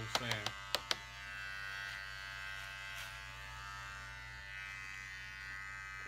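Electric hair trimmer buzzing steadily, with a few sharp clicks in the first second.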